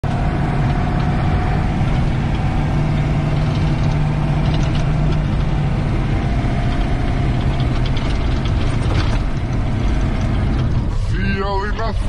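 Engine and road noise of a military vehicle heard from inside its cabin while driving: a loud, steady drone with a constant low hum. A voice starts about a second before the end.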